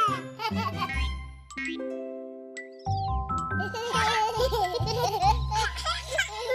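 Children's cartoon music with cartoon babies giggling and babbling over it, mostly in the second half; a brief high squeaky glide sounds a little before the middle.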